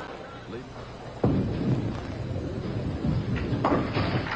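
A bowling ball striking the pins about a second in: a sudden crash as the pins scatter and clatter, dying away over the next couple of seconds.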